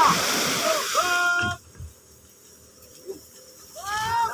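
Surf breaking on a beach as a steady rush of noise, with men's voices calling out over it, one of them a long held shout. The sound drops away abruptly about a second and a half in, leaving only faint sounds until voices come back near the end.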